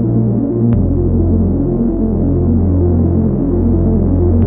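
Industrial techno from a DJ mix: a deep, sustained synth bass that steps to a new pitch about three-quarters of a second in and again near the end, under a repeating pulsing synth pattern.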